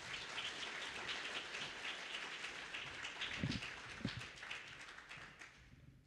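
Audience applauding, a dense patter of clapping that fades out near the end.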